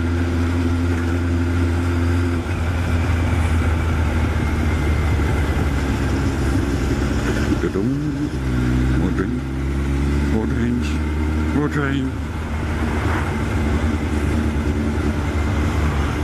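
Honda CB1100SF X-Eleven's inline-four engine running at road speed, heard from the riding motorcycle with wind rush on the microphone. The engine note steps to a new pitch a few times.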